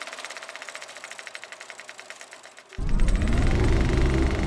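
Fast, even mechanical clicking, about ten clicks a second, slowly fading. About three seconds in, a sudden loud deep rumble of horror-trailer sound design cuts in.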